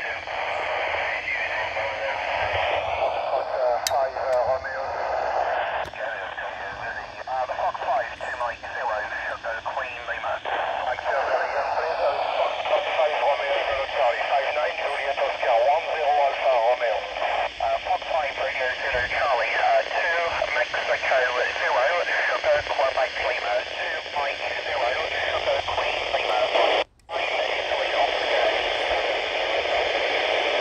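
Amateur radio operators' voices relayed through the AO-91 satellite's FM downlink and heard from a Yaesu FT-470 handheld's speaker: thin, hissy radio speech from a busy pass. The signal cuts out for a moment near the end, as the satellite is being lost.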